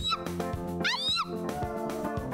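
Yamaha arranger keyboard playing a praise-and-worship intro over a steady drum and bass backing. A high lead voice makes a quick rising-then-falling pitch slide about a second in.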